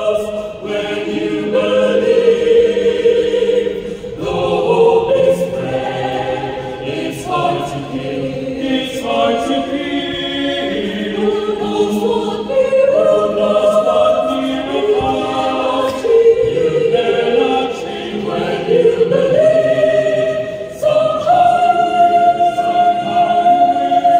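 Mixed-voice choir singing in harmony, holding sustained chords that shift phrase by phrase, with short breaks between phrases about half a second in and around four seconds in.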